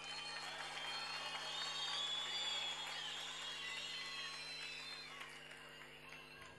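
Faint, muffled crowd cheering and applause, swelling about two seconds in and dying away before the end.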